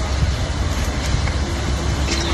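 Steady, loud outdoor background noise with a heavy, unsteady low rumble, like a phone microphone recording in the open air.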